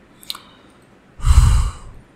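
A man's sigh, a loud breathy exhale of about half a second, about a second in, with a low rush of air hitting the microphone. A faint click comes just before it.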